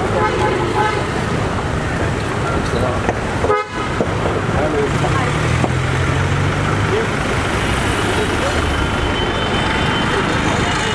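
Busy street traffic with vehicle horns tooting and people talking. A brief dip in the sound comes just over a third of the way through.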